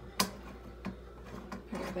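Metal faucet adapter being screwed onto a kitchen faucet spout by hand: one sharp click, then a couple of lighter ticks and the rubbing of its threads.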